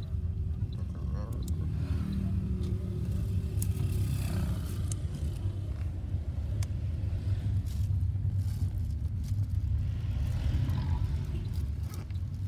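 Steady low rumble of engine and road noise heard inside the cabin of a moving car.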